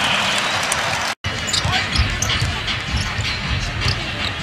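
A basketball being dribbled on a hardwood arena court, its bounces heard as low knocks over steady arena crowd noise. The sound drops out briefly about a second in where the clip cuts.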